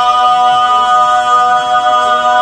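Barbershop quartet singing a cappella in four-part close harmony, holding one chord steadily.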